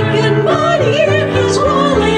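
Two women singing a song into microphones over piano accompaniment, their voices wavering in vibrato and gliding between notes without a break.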